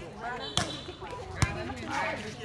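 Two sharp slaps of hands striking a light, inflatable air volleyball, a little under a second apart, the second louder, with players' voices around.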